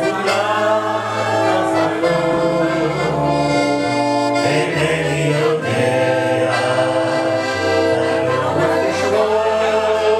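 A man singing a melody into a microphone, accompanied by a piano accordion and an electronic keyboard, with long held notes and a steady level throughout.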